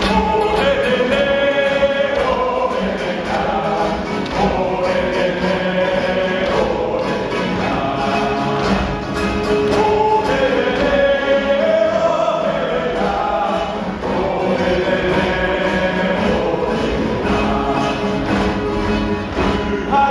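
A large group of people singing a song together, many voices carrying one melody with long held notes.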